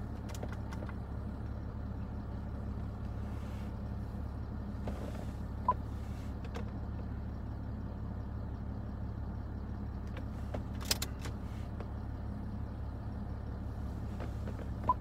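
Jaguar XF's 3.0-litre V6 turbodiesel idling, a steady low drone heard from inside the cabin. A short beep comes about six seconds in, and a sharp click just before eleven seconds.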